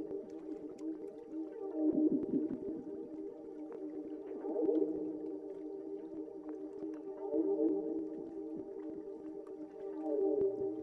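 Ambient soundtrack of layered held tones that waver and swell, louder about two, five and seven and a half seconds in, with faint scattered clicks.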